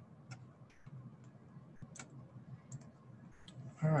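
A few faint, scattered computer-mouse clicks, irregularly spaced, the sharpest about two seconds in.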